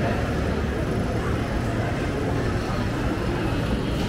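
Steady outdoor ambience: a constant low rumble with faint voices in the background.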